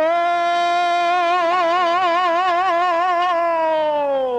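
A woman's gospel voice holds one long sung note on the word "shore". She scoops up into it, holds it with a vibrato that grows wider, and slides the pitch down near the end.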